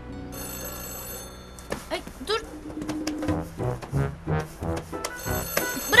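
A mobile phone ringing: a high electronic ring sounds for about a second starting a third of a second in, then rings again near the end.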